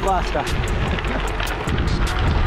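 Steady wind and tyre rumble from a gravel bike riding on a gravel track, under background music with a steady beat. A short vocal sound comes right at the start.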